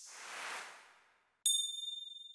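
A soft whoosh that swells and fades, then, about one and a half seconds in, a single bright, high bell-like ding that rings out and decays.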